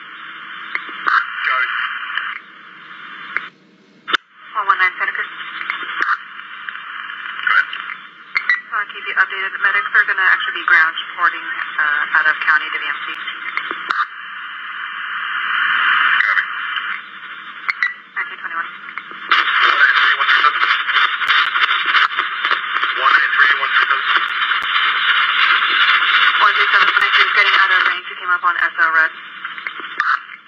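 Police two-way radio traffic with narrow, tinny bandwidth: hiss with voices too garbled to make out. A louder stretch of static-laden transmission runs from about 19 to 28 seconds in.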